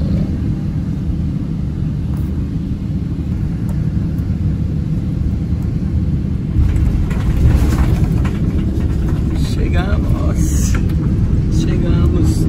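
Boeing 777 cabin noise from a window seat on landing: a steady low rumble of engines and airflow that turns louder and rougher about six and a half seconds in, as the jet touches down and rolls along the runway.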